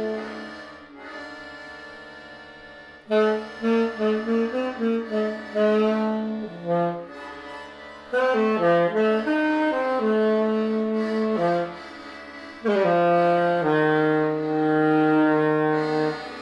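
Music: a solo wind instrument, saxophone-like, playing a melody. It starts about three seconds in with a run of short notes, then moves into longer held notes, with a short break near the end.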